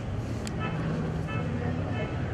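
A steady low rumble under faint background voices in a room, with one sharp click about half a second in.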